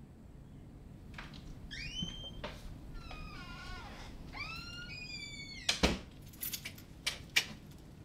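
A front door being unlocked and opened, with high squeaky creaks, then shut with a loud knock about six seconds in, followed by a few sharp clicks.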